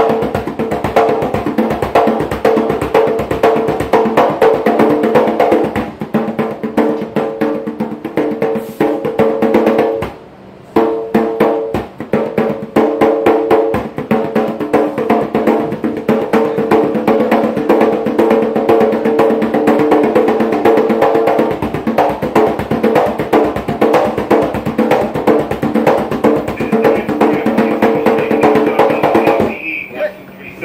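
Hand drum played fast with bare palms, a rapid, busy rhythm of strokes that breaks off for about half a second about ten seconds in, then carries on until it stops at the very end.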